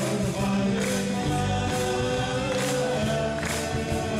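Live country-gospel band playing with singing: guitars, bass guitar, keyboard and fiddle, with a steady beat.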